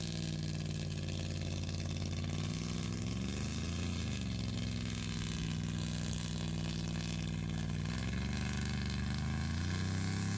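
An old Class C motorhome's engine working hard under heavy load as it drags a log heavy enough to plow a path through the grass. The engine note swells up and back down about three to four seconds in, then rises again near the end.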